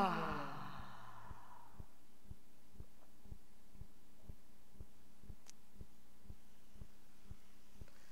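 A woman's deep sigh on the out-breath, voiced and falling in pitch, trailing off into a breathy exhale that fades within about two seconds. After it, a faint steady hum with soft low ticks a few times a second.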